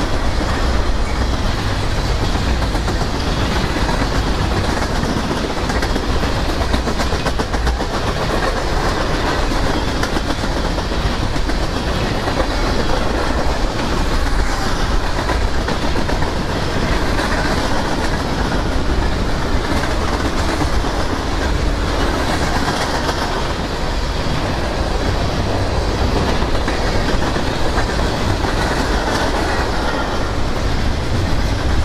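Freight cars of a long mixed freight train rolling past close by: a steady, loud rumble of steel wheels on rail that holds even throughout.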